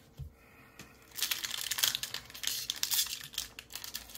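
Foil Pokémon booster pack wrapper crinkling and tearing as it is handled and opened, starting about a second in.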